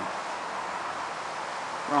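Steady background hiss with no distinct sounds in it.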